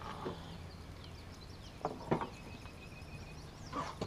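Faint bird chirps over quiet outdoor background, with two short sharp knocks about two seconds in.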